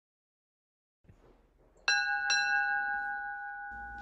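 A bell-like chime struck twice about half a second apart, its clear tones ringing on and slowly fading.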